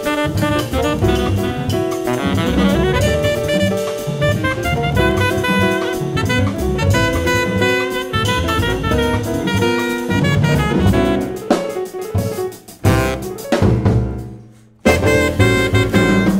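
Live jazz quartet of tenor saxophone, piano, double bass and drum kit playing together at full tilt. Near the end the band breaks into a few short stabbed hits with gaps between them, stops for a moment, then comes back in together.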